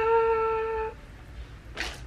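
A woman humming one held, high note for about a second, its pitch dipping slightly as it ends, then a short breath in near the end.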